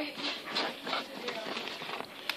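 Hands shaping a rope of slime on a tabletop, making faint, irregular small clicks and taps.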